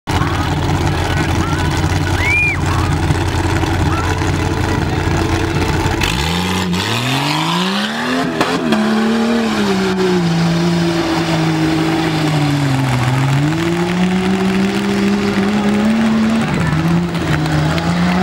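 Jeep Cherokee engine idling with a low rumble. About six seconds in it revs up sharply and stays at high revs as it drives through the mud, its pitch dipping and climbing again with the throttle.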